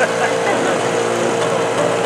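Portable fire pump engine running at steady, high revs, pumping water into the attack hose line.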